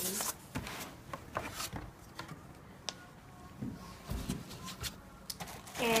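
Handling noise as a black finned metal jammer case is lifted out of its foam packaging and set down: scattered rubbing and light clicks of foam and cardboard, with a couple of soft thumps about four seconds in.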